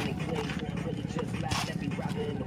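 Background chatter of onlookers with a steady low hum underneath, and one sharp knock about one and a half seconds in.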